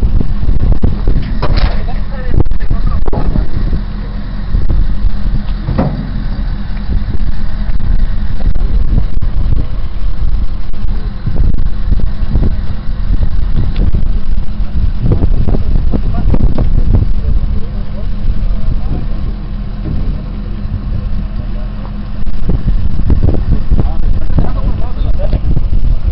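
Wind buffeting a handheld camera's microphone, a loud low rumble that swells and drops, with muffled voices under it.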